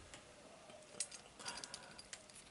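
Faint clicks of a utility knife and charger wire being handled, with a couple of sharp ticks about a second in and near the end.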